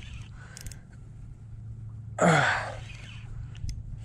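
A man's heavy voiced sigh about halfway through, falling in pitch, from the strain of fighting a strong fish on rod and reel, over a steady low rumble.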